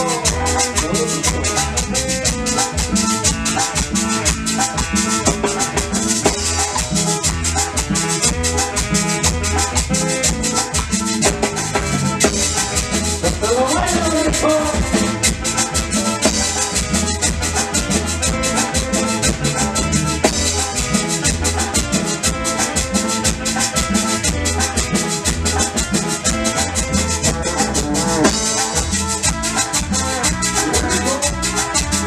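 Live band playing an instrumental chilena: an electronic keyboard carries the melody over a steady low bass pulse, with a metal güiro scraped in time and an electric guitar.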